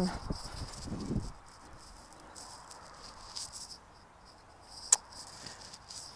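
Faint insects chirping, with a low rustle in the first second and a single sharp click about five seconds in.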